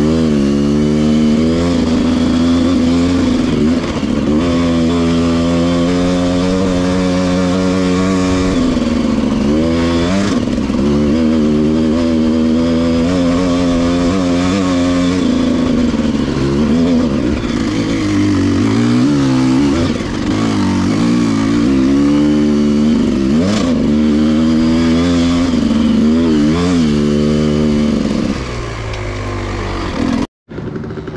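Dirt bike engine running under way on a rough trail, its revs rising and falling over and over as the throttle opens and closes through the gears, easing off near the end.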